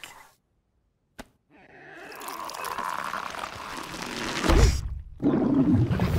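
Cartoon sound effect of a bunny gulping down a stack of pancakes: a slurping, sucking rush that grows louder over a few seconds. Near the end a loud deep rumble sets in.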